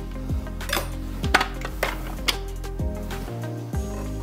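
A kitchen knife chopping peeled sweet potato on a plastic cutting board: about half a dozen sharp knocks, unevenly spaced, over steady background music.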